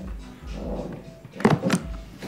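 Two quick knocks from a hard-sided briefcase being handled, about one and a half seconds in, over background music.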